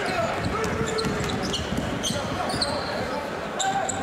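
Steady arena crowd noise during live basketball play, with a ball bouncing on the hardwood and a few brief high squeaks from sneakers on the court in the second half.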